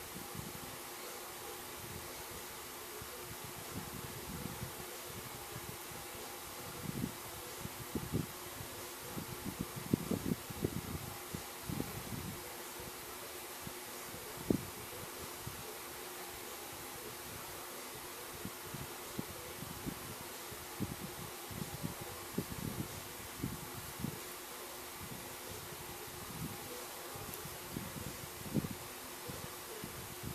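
Electric fan running with a steady hum, over soft, irregular rustles and bumps of hands working yarn with a crochet hook, busiest about a third of the way in.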